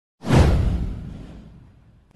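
A whoosh sound effect for an animated intro: it starts suddenly, sweeps downward in pitch and fades out over about a second and a half.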